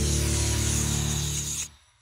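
Short music sting with sustained low tones and a bright hissing swoosh over them. It stops suddenly near the end and fades out.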